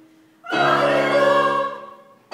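A choir sings one held chord, coming in about half a second in and fading away after about a second and a half.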